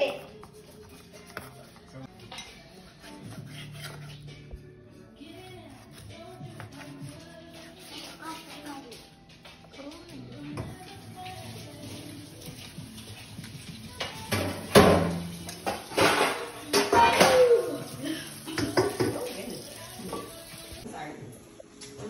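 Kitchen work: a knife chopping onion on a wooden cutting board in quick, faint strokes. About halfway through come louder knocks and clatter of dishes and pans being handled.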